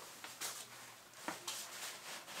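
Faint handling noise: a few soft knocks and rustles as sneakers and the paper in their box are moved about.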